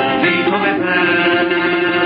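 Persian classical music: two male voices singing together over two tars, with a long held vocal note.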